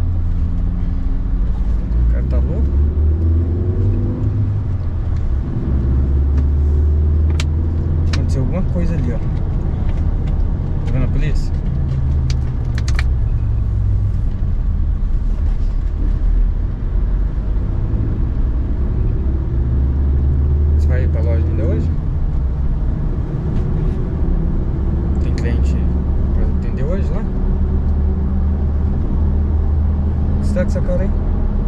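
Road and engine noise inside a moving car's cabin: a steady low drone, with a few faint clicks and rustles.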